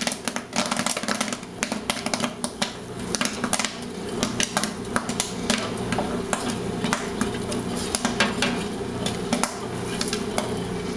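Kettle corn popping in a large kettle, a dense, irregular crackle of kernels bursting, while a paddle stirs and knocks against the metal pot, over a steady low hum.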